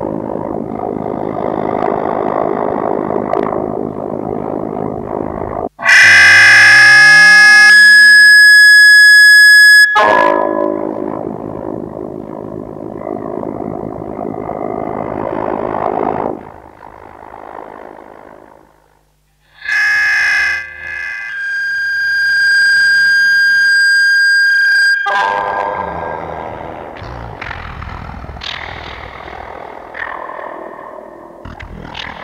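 Harsh industrial electronic music from a live set, heavily distorted and effects-processed. Two sudden, very loud blasts of distorted tones cut in about six seconds in and again about twenty seconds in, the second right after a brief drop almost to silence, with noisy texture between them.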